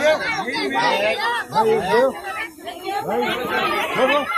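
Several people talking over one another in a crowded, jostling group: loud overlapping chatter with no other sound standing out.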